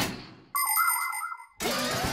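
Cartoon sound effects for a segment intro: a swoosh fading out, then about a second of bright ringing ding with a wobbling tone under it, followed near the end by the start of a short musical jingle.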